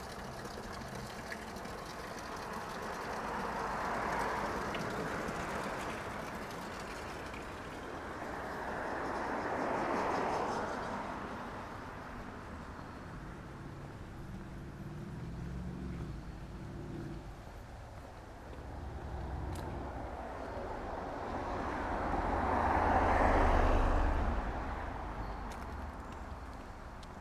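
Cars passing on a street, their engine and tyre noise swelling and fading three times. The last pass, near the end, is the loudest, with a low rumble.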